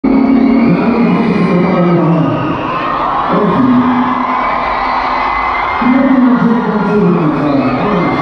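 Live concert sound: a large crowd cheering and singing along over sustained music from the stage, with no steady drum beat.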